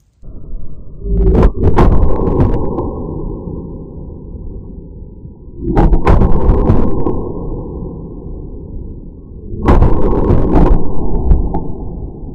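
.22 pistol shots in slowed-down, slow-motion audio: three deep, drawn-out booms about four seconds apart. Each opens with a sharp crack and rumbles away slowly.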